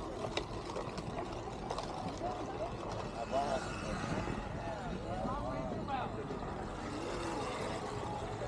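Outdoor crowd ambience: faint chatter of passers-by, clearest in the middle, over a steady low rumble.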